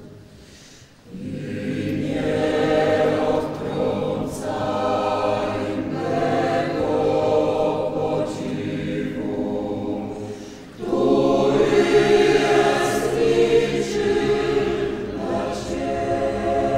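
Mixed church choir singing a sacred song in held phrases. The singing drops away briefly about a second in, and again near eleven seconds, where it comes back louder.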